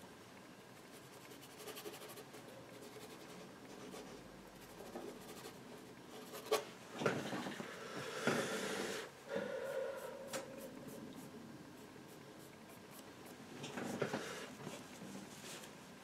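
Paintbrush brushing and dabbing oil paint onto a painting panel in quiet scratchy strokes, with louder bursts of strokes about halfway through and again near the end.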